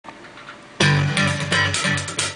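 Band music starts abruptly just under a second in: a drum kit with cymbals playing along with bass guitar and guitar, with a loud, bright hit at the entry.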